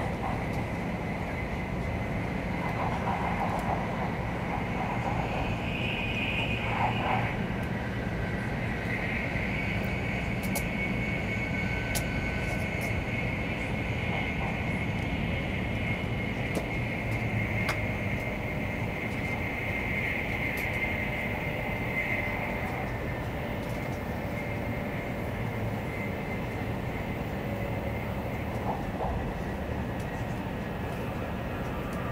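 Interior running noise of a Taiwan High Speed Rail 700T electric trainset travelling at speed: a steady rumble of wheels and running gear with a thin, steady high whine.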